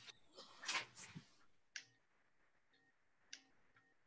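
Near silence, broken by a few faint, short clicks and a soft hiss about a second in.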